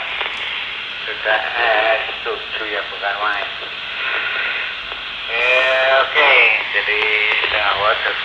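Another station's voice coming in over a Baofeng GT-5TP handheld VHF transceiver, answering a half-watt test call: radio speech from the handset's small speaker, thin and cut off above the mid-range, over a steady hiss of static.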